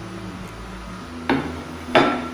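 A dinner plate set down on a table: two sharp knocks about two-thirds of a second apart, each with a short ring.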